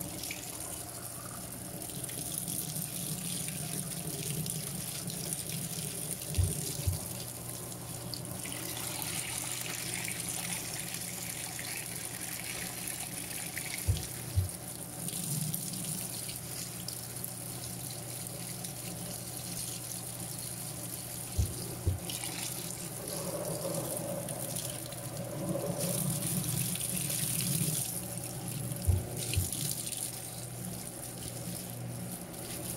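Water jetting from the inlet of a Panasonic 16 kg top-load washing machine onto sheets in the tub as it fills: a steady splashing rush. A pair of short low thumps comes about every seven seconds.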